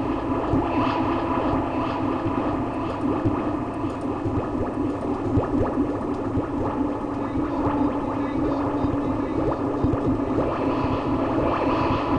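A tree branch played as a percussion instrument through a guitar effects pedal, giving a dense, steady electronic texture of many small crackles over a low drone.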